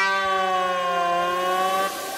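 A held, siren-like synthesizer tone from an electronic dance music DJ mix, sagging slightly in pitch and rising back, then cutting off just before the end.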